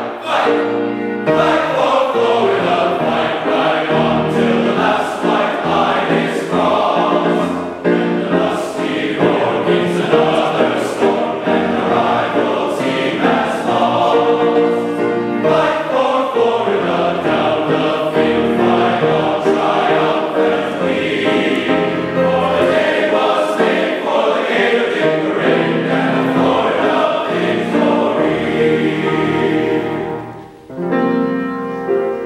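A large men's glee club choir singing in parts, a medley of college fight songs, led by a conductor.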